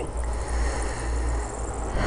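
Wind buffeting the camera microphone: a steady low rumble with a faint hiss over it.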